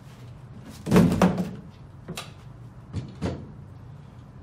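Handling knocks from a Watts QT-101 metal toilet carrier and its cardboard box. There is a heavy thump about a second in, then a few lighter knocks and clanks as the carrier is set down on a tabletop.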